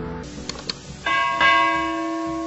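Subscribe-animation sound effects: two quick click sounds, then a bell chime about a second in, struck again and left ringing.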